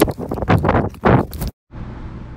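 Wind buffeting a phone's microphone outdoors in loud, ragged gusts, cut off abruptly about one and a half seconds in, followed by a faint steady room hum.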